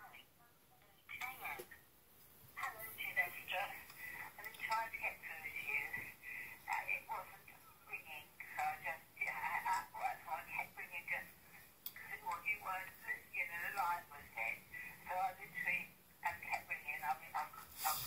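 An elderly woman's voice on a recorded voicemail message, played back through a mobile phone's small speaker, thin and narrow in sound like a phone line.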